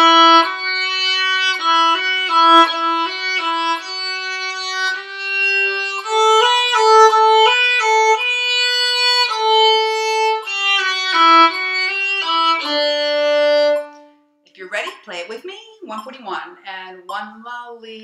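Solo violin playing a slow practice exercise of slurred eighth-note triplets, notes changing several times a second, stopping about fourteen seconds in. A woman then talks near the end.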